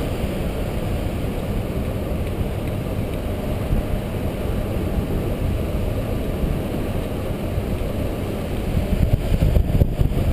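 Wind buffeting the microphone of a camera carried by a paraglider in flight: a steady low rumble that turns gustier near the end.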